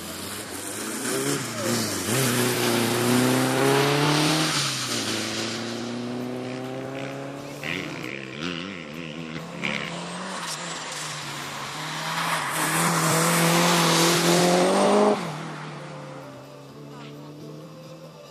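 A car's engine revving hard as it accelerates along a wet asphalt sprint course, its pitch climbing in runs broken by gear changes. It is loudest as the car passes, about twelve to fifteen seconds in, then drops suddenly as the driver lifts off.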